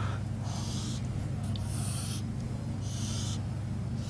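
Marker pen drawing on a whiteboard: three short squeaky scratching strokes, each about half a second long and about a second apart, over a steady low hum.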